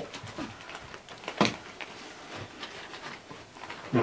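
Low room noise with faint scattered handling sounds and one sharp knock about a second and a half in.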